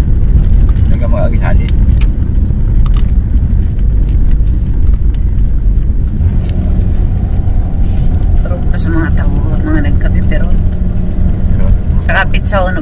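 Steady, loud low rumble of a car driving on a concrete road, heard from inside the cabin, with a few light rattling clicks.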